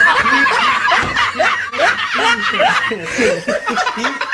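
Laughter: voices snickering and chuckling in short repeated bursts.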